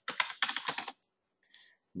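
Typing on a computer keyboard: a quick run of keystrokes that stops about a second in.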